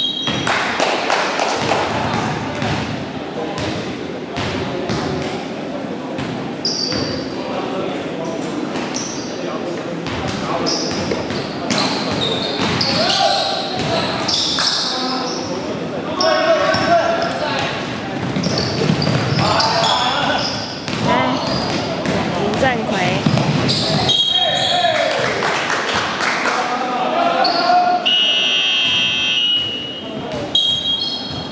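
A basketball bouncing on a hardwood gym floor again and again during play, mixed with players' shouts and calls, all echoing in a large indoor hall.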